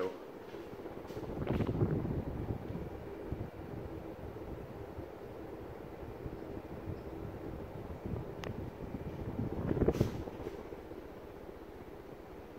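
Casablanca Zephyr five-blade ceiling fan running with a steady rush of air. Gusts of blade wind hit the microphone about two seconds in and again near ten seconds.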